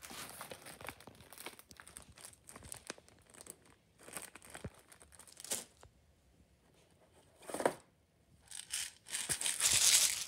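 Handling noise of plastic detergent bottles and packaging: irregular rustling, crinkling and light knocks, with the loudest, longest stretch of rustling near the end.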